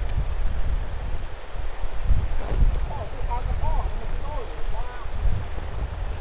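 Wind buffeting the microphone in an uneven low rumble, over the steady rush of a stream.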